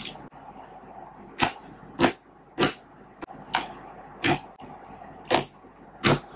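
Homemade glue slime made with lotion and toothpaste being kneaded and poked by hand. Air pockets in it pop sharply about seven times, roughly once every three-quarters of a second, over soft squishing.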